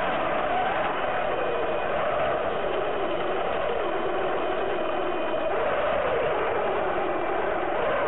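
Drive motor and gears of a 1:14-scale RC Tatra 130 model truck whining steadily as it drives over sand, picked up by a camera riding on the truck. The pitch dips a little about halfway through and stays lower for a few seconds.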